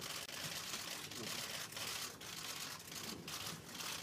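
Many press camera shutters clicking rapidly and overlapping, mixed with rustling and a faint murmur of voices in a crowded room.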